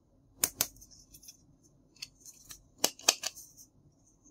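Sharp hard-plastic clicks as the two halves of a plastic toy tomato are handled and fitted together: a strong double click about half a second in, a few lighter taps, then another double click near the three-second mark.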